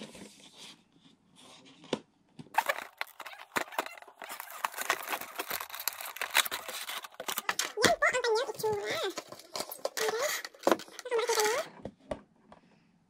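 Cardboard product box being opened by hand: a stretch of dense rustling, scraping and crackling of cardboard and packaging as the lid and flaps are pulled open. After it come a few short bursts of voice.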